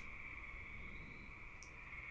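Faint room tone in a gap between a man's words: a steady high-pitched hum over a low hiss of background noise.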